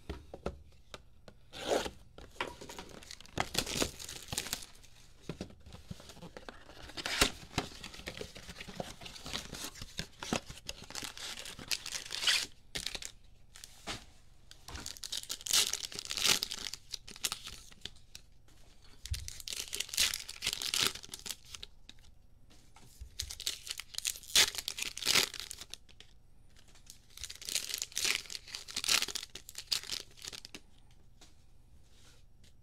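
Foil trading-card packs being torn open and crinkled by hand, in repeated bursts of tearing and crinkling about one to three seconds long with short pauses between.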